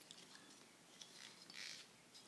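Near silence with faint handling noise: a few soft clicks and a brief rub about a second and a half in, as a part of an old binocular is unscrewed by hand.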